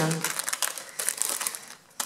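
Clear plastic packet of metal cutting dies crinkling and crackling as it is handled and pulled open. It is a quick run of small crackles that thins out near the end.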